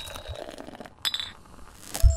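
Logo-animation sound effects: a fading chord of tones, then a sharp clink with a brief high ring about a second in, and another sharp click near the end.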